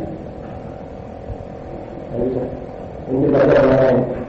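A pause in a man's lecture filled with a steady low hum and background noise from the recording; his voice comes back briefly about two seconds in and continues loudly near the end.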